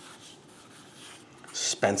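Pencil lead scratching softly across a stack of drawing paper in long sketching strokes. A man's voice starts near the end.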